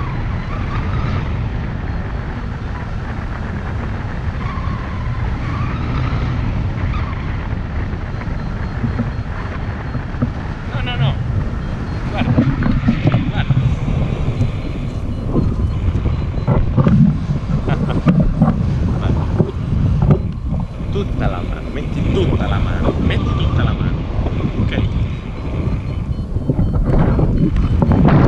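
Wind rushing over an action camera's microphone in paraglider flight: a steady low rumble of buffeting air that swells in gusts and grows louder in the second half.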